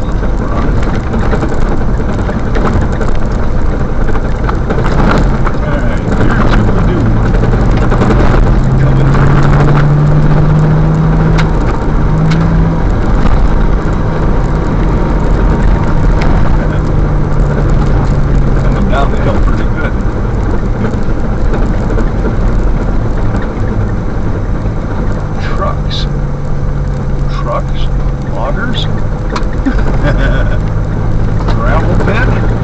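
A vehicle driving down a gravel road in first gear: a steady rumble of tyres on gravel under an engine hum whose pitch rises a few seconds in, falls back around the middle and rises again near the end, as the engine holds the vehicle back on the descent. A few sharp ticks near the end.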